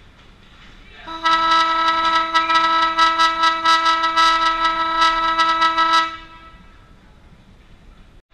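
Ice rink horn blaring one steady note for about five seconds, starting about a second in and cutting off sharply. It signals a stoppage in the hockey game, a goal or the end of a period.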